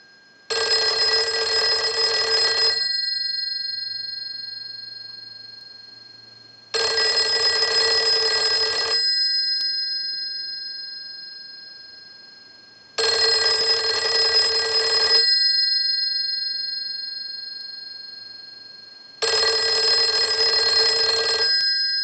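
Western Electric 302 telephone's bell ringer ringing in on a ring cycle sent from a test analyzer: four ring bursts of about two seconds, one every six seconds or so. After each burst the gongs ring on and slowly fade. The ringer is working.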